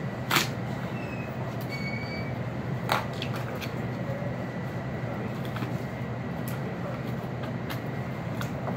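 Steady low hum of cutting-room ventilation machinery, with two sharp knocks from the butcher's handling of the meat, bones and knife on the cutting table, about half a second and three seconds in, and a few fainter ticks.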